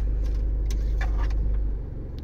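Steady low rumble of the Isuzu D-Max's diesel engine idling with the air conditioning running, heard from inside the cabin; the rumble drops in level near the end. A few faint light clicks sound as the thermometer probe is fitted into the dash vent.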